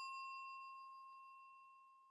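The fading ring of a bell-like 'ding' sound effect from a subscribe-button animation, the chime confirming the click. It dies away about a second and a half in.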